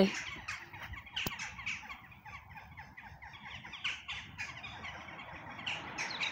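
A flock of birds calling, with many short, overlapping calls several times a second. A single sharp click sounds about a second in.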